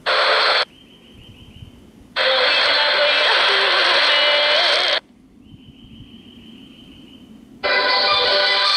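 A JGC WE 055 digital PLL world-band receiver's speaker playing broadcast stations in snatches as it is stepped through the dial: station audio cuts in and out abruptly three times, briefly at first, then for about three seconds, then again near the end. The muted gaps between carry only a faint whistle.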